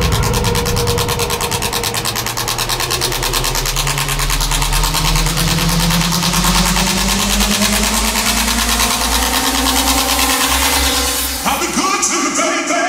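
Techno DJ mix in a build-up: a synth tone rising slowly in pitch over a fast ticking high pattern and a low drone, until the track changes near the end.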